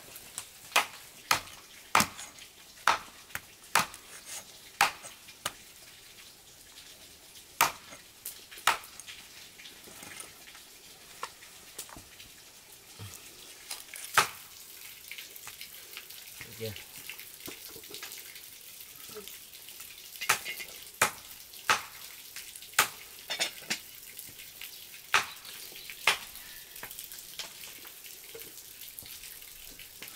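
A knife and food being worked on a woven bamboo tray: sharp, irregular clicks and taps, several close together in the first third, a lone loud one midway, and another cluster later, over a quiet steady hiss.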